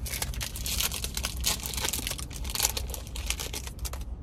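A trading-card pack's foil wrapper crinkling and tearing in the hands as the pack is opened: a dense, irregular crackle.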